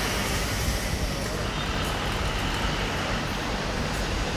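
Steady city street noise: a constant wash of road traffic and general bustle, with no single sound standing out.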